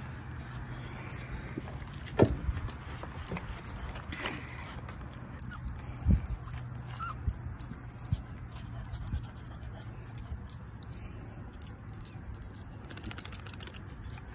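A bunch of keys jingling in small, irregular clinks as a puppy tugs and bites at them, with two louder knocks, one about two seconds in and one about six seconds in.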